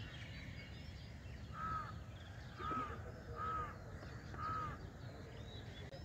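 A crow cawing four times, spread over about three seconds, over a steady low background rumble.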